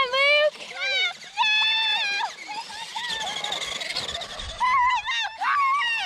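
High-pitched shouting and cheering: a short call at the start, then several long, drawn-out yells, with more shouts near the end.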